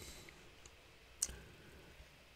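Near silence, a pause with faint room hiss and one short, faint click about a second in.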